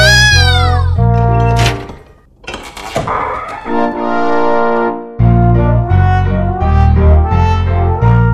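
Upbeat cartoon background music with a bouncing bass line, opening with arching whistle-like glides. It breaks off about two seconds in for a brief swish and some held tones, and the bass beat comes back about five seconds in.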